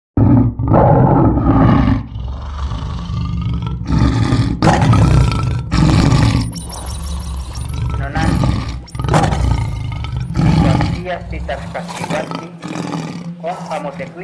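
A lion roaring, a series of loud deep roars and shorter grunts that grow softer, with a low steady hum underneath from about six seconds in.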